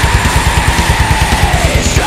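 Blackened melodic death metal played loud: rapid, even kick-drum beats under a long held melody line that fades out near the end, with no vocals.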